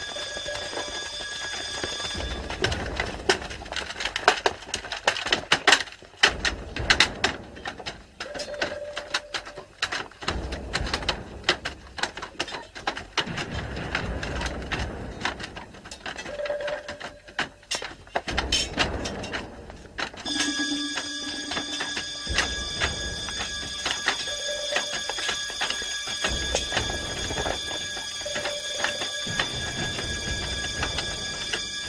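Battle sound track: sustained metallic ringing tones, broken from about two seconds in to about twenty seconds in by a dense, uneven run of sharp clashes and knocks. The ringing then returns, with a short note recurring every few seconds.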